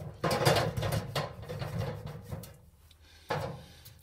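Steel filing-cabinet drawers being handled in their sheet-metal carcass: a run of irregular knocks and scrapes of metal on metal, a short lull, then another sharp knock near the end.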